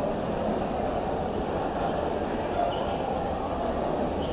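Shopping-mall crowd ambience: steady indistinct chatter of many shoppers' voices in a large hard-floored hall, with footsteps. A short high-pitched chirp sounds a little under three seconds in.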